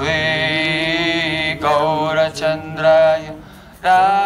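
A man chanting Sanskrit devotional prayers solo, in a melodic chant. He holds one long note for the first second and a half, breaks briefly, then sings shorter phrases, and starts a new strong phrase near the end.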